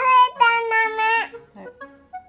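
A toddler girl's voice holding one long, high sung note for about a second and a half. The note rises into pitch, breaks briefly, then holds steady, over soft background music.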